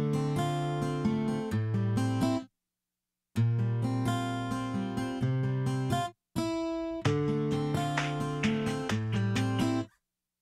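Instrumental song intro: acoustic guitar picking in short phrases, broken by a dead-silent gap of almost a second about two and a half seconds in and a brief one at about six seconds.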